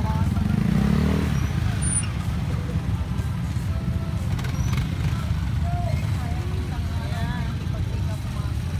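Several motorcycle engines idling together in a traffic jam, a steady low rumble, with people's voices faint in the background.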